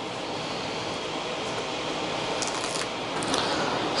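Thin protective plastic film being peeled off the 3D printer's panels, a steady crackling rustle with a few sharp crinkles late on.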